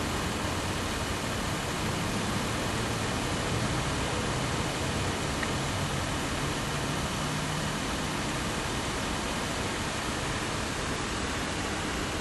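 Steady, even background hiss with a faint low hum underneath, unchanging throughout.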